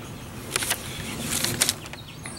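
Handling noise: a sheet of paper rustling and a few light clicks as the paper and a handheld battery bank are moved, with two short clusters about half a second and one and a half seconds in.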